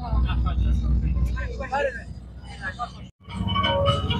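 Low steady rumble of a moving coach's engine with people talking over it. About three seconds in the sound cuts off abruptly and music starts.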